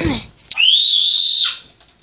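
One high, nearly pure whistled note held for about a second, dipping in pitch as it cuts off.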